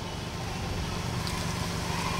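A steady low hum over an even background noise, with no distinct events.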